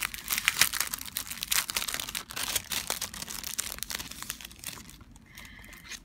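Crinkling of a clear cellophane sleeve being handled and pulled open by hand, a dense crackle that eases off about five seconds in.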